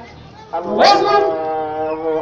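A man's voice through a microphone, sliding up about half a second in and then holding one long, steady note, a drawn-out chanted vowel.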